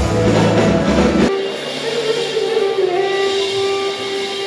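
Live band music with drums and bass that cuts off abruptly about a second in, leaving a clarinet holding one long, steady note.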